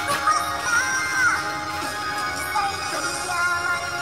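A song with a sung melody playing, its voice holding and sliding between long notes.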